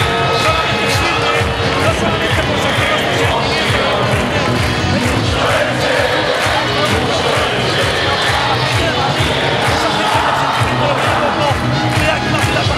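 Large crowd of football supporters singing along to music that has a steady beat, loud and unbroken.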